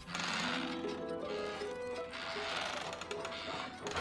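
Children's cartoon soundtrack: background music with a light, rattling noise that swells twice, once in the first second and again about two seconds in.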